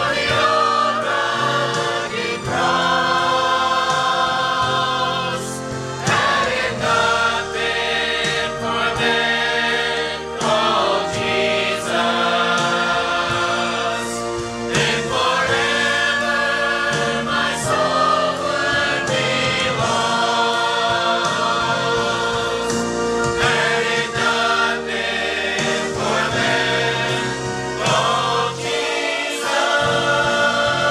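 A mixed church choir of men's and women's voices singing a gospel hymn together, continuously and at a steady level.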